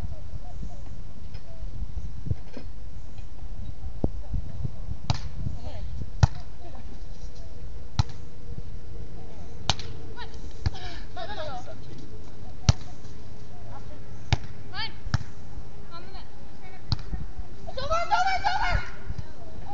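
Volleyball being played on sand: a series of sharp smacks of hands and arms hitting the ball, one every second or two, over a steady low rumble, with faint players' calls in between.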